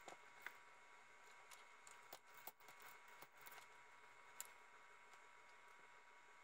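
Near silence with faint, scattered small clicks of plastic clips being pried loose on a Roomba bump-sensor cover, the clearest about four seconds in.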